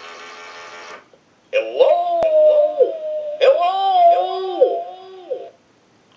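Animated Goofy lamp playing a recorded Goofy cartoon-voice line through the small speaker in its base on being switched on: a long, wavering, sing-song holler in two phrases, after a brief buzz in the first second.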